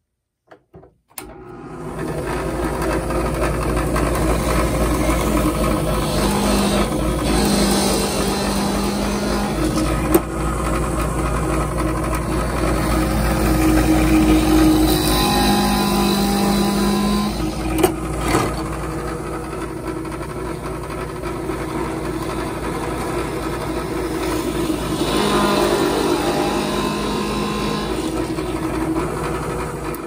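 Delta benchtop drill press switched on about a second in and running steadily as its bit bores holes through pine strips, the tone of the motor shifting several times as it works.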